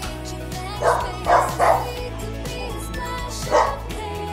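A dog barking four times, three quick barks about a second in and one near the end, over steady background music.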